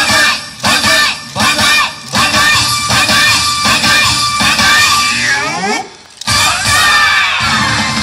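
Loud yosakoi dance music from a PA, with a choppy stop-start rhythm and group shouts over it. About five and a half seconds in a sweeping glide leads into a brief drop-out, and the music comes back about a second later.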